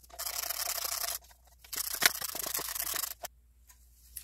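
A ratchet wrench clicking rapidly as it runs the oil filter housing bolts down, in two runs of a second or so each with a short pause between.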